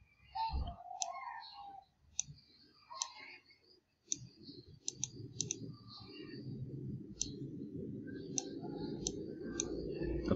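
Computer mouse clicking: a string of short, sharp clicks as the text-height spinner arrows are stepped down, with a quick run of several clicks about five seconds in. A low steady hum rises gradually under the clicks through the second half.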